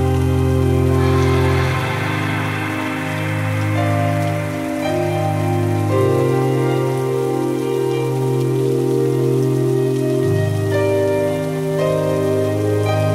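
Steady rain under slow ambient music: long held chords that move to new notes every few seconds. The rain swells a little from about one to four seconds in.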